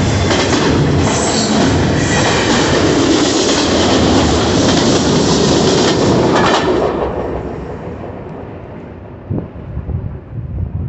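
Double-stack intermodal container freight train rolling past close by, its wheels running loud over the rails. The tail-end locomotive passes about six seconds in, and the noise then fades quickly as the train pulls away.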